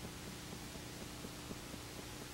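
Steady hiss with a low electrical hum and faint, irregular little ticks: the background noise of a blank stretch of videotape with nothing recorded on it.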